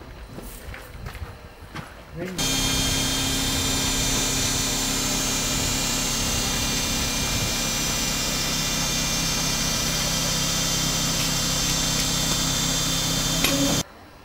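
Steady mechanical hum with a high whine from a metre-gauge electric railcar's equipment, starting suddenly about two seconds in, holding level, and cutting off abruptly near the end.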